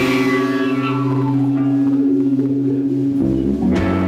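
Live rock band playing: electric guitars and bass strike a chord at the start and let it ring, then move to a new, lower chord about three seconds in.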